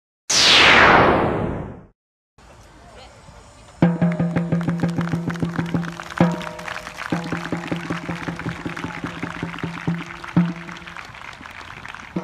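A loud falling whoosh sound effect, then after a moment of silence, supporters' drums beating rapidly, several beats a second, over a steady held note, starting about four seconds in.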